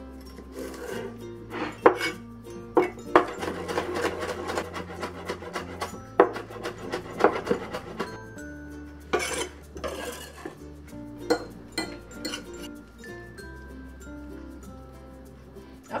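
Cleaver chopping green onions on a wooden cutting board, in irregular strokes, over background music.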